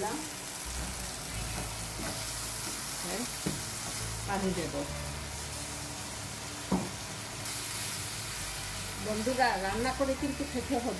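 Spice paste with dried fish and jackfruit seeds sizzling steadily in a frying pan after a little water has been added to cook it down, with a wooden spatula stirring and scraping through it.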